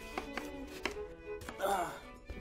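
Chef's knife cutting through an eggplant and striking a wooden cutting board, a few separate strokes, over light string background music.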